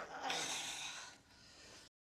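A man's forceful, breathy exhale of strain as he heaves at a heavy marble console, lasting about a second and then fading. The sound cuts out abruptly near the end.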